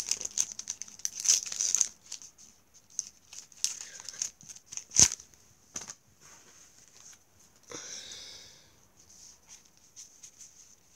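A sticker packet being torn open and the stickers handled: crinkling and rustling of the wrapper, dense in the first two seconds and scattered after. There is one sharp knock about five seconds in and a short rustle near the end.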